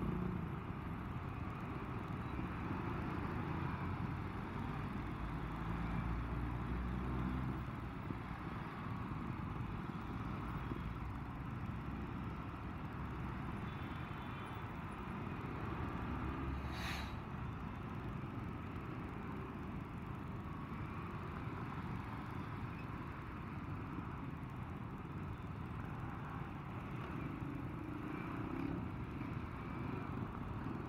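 Motorcycle engine running at low speed in slow, dense traffic, with the steady noise of surrounding motorcycles and cars. One short sharp tick comes about halfway through.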